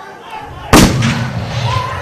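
A single loud gunshot bang about three-quarters of a second in, with a trailing echo that dies away, heard over the dance track.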